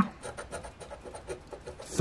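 A coin scraping the coating off the number spots of a scratch-off lottery ticket, in a run of short, quick strokes.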